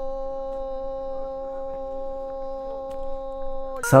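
A man's voice holding one long, steady sung note in a Tibetan folk song. It breaks off near the end, and the ornamented, wavering line of the song begins.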